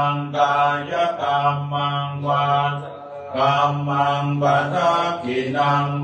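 A Thai Buddhist monk chanting a Pali blessing chant in a steady, low monotone. The chant is recited in long phrases with brief pauses for breath.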